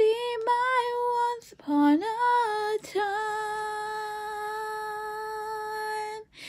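A woman singing solo with no accompaniment heard: a few short sung phrases, then the words "this time" held as one long steady note for about three seconds near the end.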